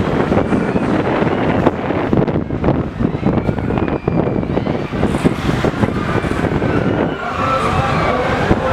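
Wind buffeting the microphone of a camera riding a spinning chain swing ride: a loud, steady, fluttering rush of air.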